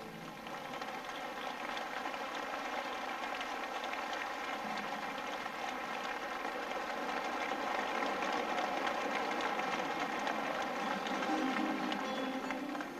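Large concert audience applauding, a dense even clapping that swells a little in the second half.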